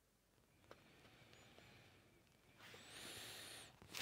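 Near silence: room tone, with a faint click about three-quarters of a second in and a soft, faint hiss during the last second or so.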